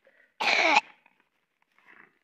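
A single loud cough close to the microphone, lasting under half a second.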